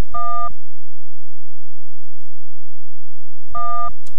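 Two short electronic beeps, each about half a second long and about three and a half seconds apart, each a steady tone with several pitches stacked together; faint hiss fills the gap between them.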